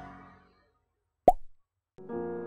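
Background music fading out, then a single short, loud pop sound effect a little over a second in, with silence around it.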